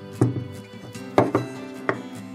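Carved linden-wood box knocking against a wooden desktop four times as it is turned over by hand and set down, over background music.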